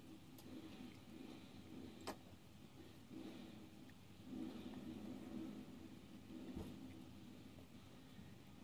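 Faint soft swishing of a foundation brush buffing over the skin of the face, with one sharp click about two seconds in.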